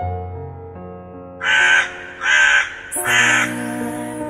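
Soft keyboard music with sustained notes, broken by three loud, harsh animal calls in quick succession, starting about a second and a half in, each under half a second long.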